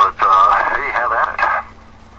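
A person talking on a talk-radio broadcast, stopping about three-quarters of the way through, leaving a faint steady hum.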